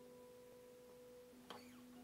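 Near silence: the last notes of acoustic guitar music ringing faintly and dying away, with a faint pluck about one and a half seconds in.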